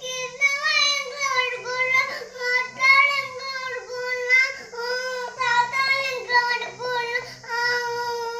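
A young child's high-pitched voice in a sing-song, singing-like line, wavering and breaking into short phrases, with a faint steady low hum beneath.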